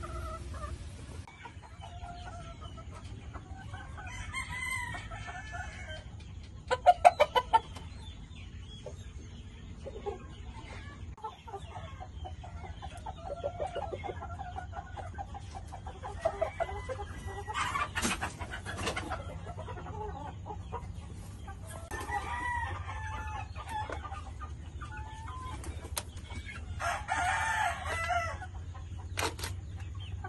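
Gamefowl roosters and hens in breeding pens: clucking, with a rooster crowing several times, spaced through the stretch. A quick run of loud, sharp calls comes about seven seconds in, over a steady low hum.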